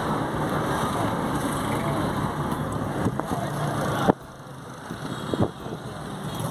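Car engine and road noise heard from inside a moving car's cabin. About four seconds in it cuts off suddenly with a click, leaving a quieter background with another click near the end.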